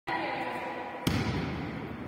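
A volleyball bounces once on the gym floor about a second in, a single thud that echoes in the large hall.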